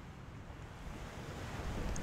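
Ocean surf washing onto a beach, a steady wash of waves that swells in loudness toward the end.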